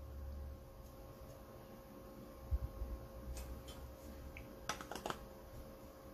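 Light clicks and taps as a steel tube RC chassis frame with a bolted-in aluminium skid plate is handled, with a low knock about halfway in and a small cluster of clicks near the end, over a faint steady hum.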